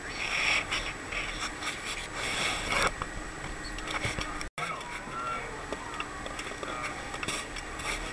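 Rough, rasping noise on a handheld camera's microphone aboard a boat at sea, with a split-second gap of silence about halfway through.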